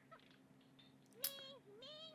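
Faint, short, high-pitched vocal calls, two of them, each rising and falling in pitch. The first starts about a second in. A low electrical hum runs beneath them.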